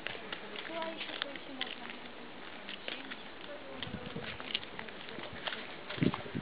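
Faint outdoor background: quiet, distant voices with scattered light clicks, likely handling of the camera.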